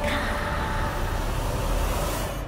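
Dramatic TV background score: a dense, low, rumbling sustained swell under a reaction shot.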